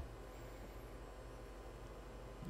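Faint steady low hum with a light hiss: background room tone.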